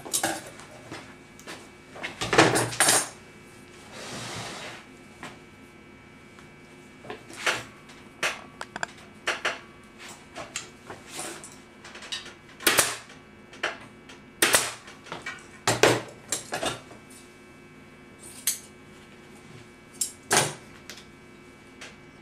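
Upholstery staple gun firing staples through fabric and cording into a wooden chair frame: about a dozen sharp clacks at irregular intervals, mixed with handling knocks.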